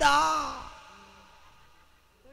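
A man's voice through a stage microphone and loudspeakers: one drawn-out word that falls in pitch and fades out within about the first second, leaving near quiet.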